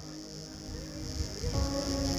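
Soft sustained chords from a live praise band's keyboard, with a fuller chord coming in about one and a half seconds in, under a steady high-pitched hiss.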